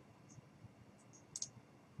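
A few faint computer mouse clicks over near-silent room tone, the loudest about a second and a half in.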